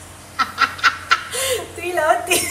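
A woman laughing in four short, quick bursts starting about half a second in, followed by a voice.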